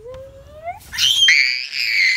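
A child's voice sliding upward in pitch, then breaking into a loud, very high-pitched scream about a second in that holds for over a second.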